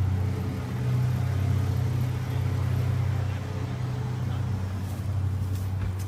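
A steady low rumble with nothing else prominent over it.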